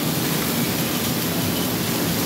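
Steady rush of water spraying and pouring down from splash-pad fountains onto the wet pad.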